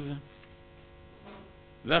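A faint, steady electrical hum from the microphone and sound system fills a pause in a man's lecture. His voice trails off just after the start and resumes near the end.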